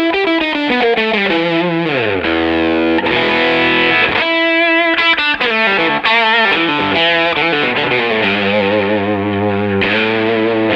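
Vintage Fender Telecaster played through an overdriven brownface Fender tube amp: chords and single notes, with a run sliding downward in the first couple of seconds and wavering, vibrato-like notes later on.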